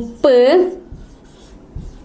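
Marker pen writing on a whiteboard, faint strokes, after a woman's voice draws out a syllable at the start.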